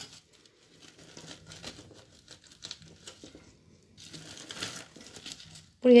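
Gloved fingers digging and scraping through gravel and potting soil in a pot, small stones crunching and clicking in a run of irregular scratches that grows busier near the end. The fingers are pushing aside gravel that has built up, to open a planting hole.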